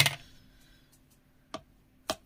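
A sharp hard-plastic knock as a clear acrylic stamping block is handled on the craft mat, then a faint click about one and a half seconds in.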